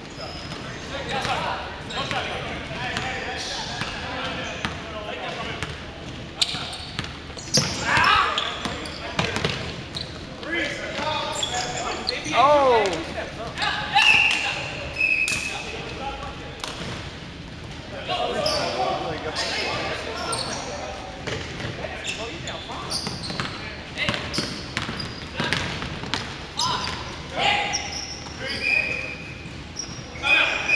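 Basketball bouncing on a hardwood gym floor, repeated knocks through the play, with players' voices calling out, echoing in a large hall.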